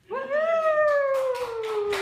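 One long high vocal call that rises quickly and then slides slowly down in pitch over about two seconds. A run of short sharp taps or claps starts about half a second in.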